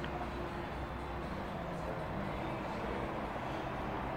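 Steady background noise of a large showroom hall: an even low hum and hiss with faint, indistinct sounds and no distinct event.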